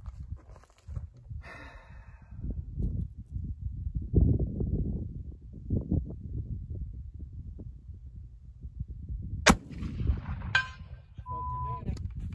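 Armi Sport 1863 Sharps carbine, a .54-calibre black-powder breech-loader, fired once with 35 grains of 3F powder: a single sharp shot about three-quarters of the way through. About a second later a short ringing tone follows.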